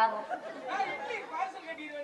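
Speech only: performers' voices in Tamil stage dialogue over a microphone, with some overlapping chatter.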